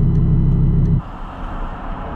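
Lamborghini engine idling with a steady low drone, then cut off abruptly about a second in.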